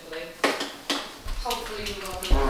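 Voices with two sharp knocks, one about half a second in and one about a second in.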